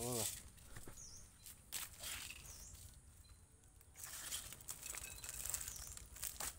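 Faint rustling of paper and cardboard packaging being handled, rising in the last two seconds, with a small bird's short high chirps three times in the background.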